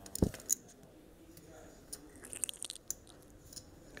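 A knock on a poker table near the start, then scattered light clicks of clay poker chips being handled.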